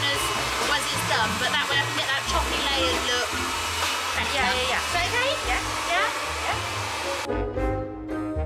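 Hair dryer blowing, a steady rush of air over background music, cutting off suddenly about seven seconds in.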